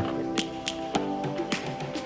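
Background music: held chords with sharp percussive ticks marking a beat.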